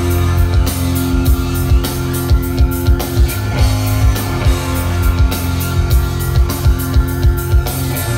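Rock band playing live through a large stage PA: electric guitars and keyboard over a steady drum beat.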